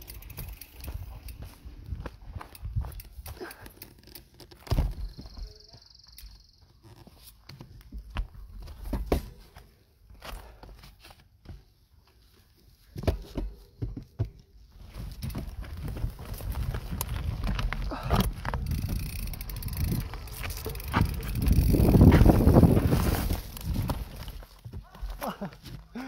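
Mountain bike rolling down a rough rocky dirt trail: frame and handlebars rattling and knocking over rocks and roots, with wind rumbling on the microphone. The rumble builds to its loudest about twenty-two seconds in, after a near-quiet spell around ten to twelve seconds.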